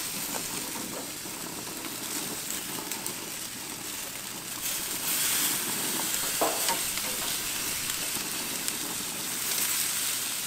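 Freshwater drum fillets sizzling on a hot gas grill, the sizzle growing louder about halfway through as pieces are turned. Light clicks of metal tongs and spatula against the grate.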